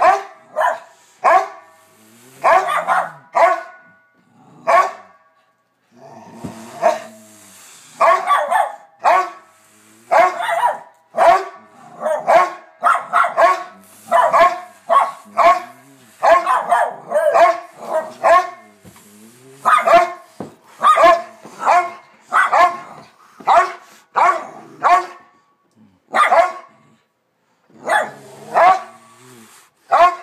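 Two miniature schnauzers barking repeatedly, short barks coming in quick runs of several with brief pauses between.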